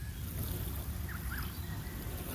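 Water showering from a plastic watering can's rose onto freshly dug soil, a steady hiss of spray. Two short faint chirps come about a second in.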